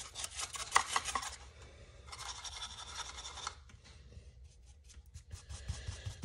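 Small bristle brush scratching and scrubbing over the hard raised detail of a painted prop control panel, rubbing on gold Rub 'n Buff wax paste. It starts with a run of quick scratchy strokes, settles into a steadier scrub about two seconds in, then thins to lighter, scattered strokes.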